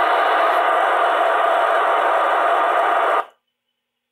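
FM transceiver's receiver static on the ISS 145.800 MHz downlink between the astronaut's transmissions: a loud, steady hiss with no signal on the channel. It cuts off abruptly a little over three seconds in.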